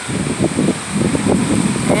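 Strong, gusty storm wind blowing across the phone's microphone, a loud uneven low buffeting that surges and eases.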